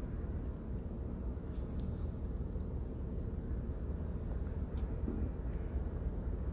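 Steady low rumble inside a car's cabin, its engine idling while the car stands in heavy traffic.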